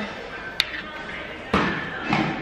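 Busy store background noise with faint music and distant voices, broken by a sharp click about half a second in and a thump about a second and a half in.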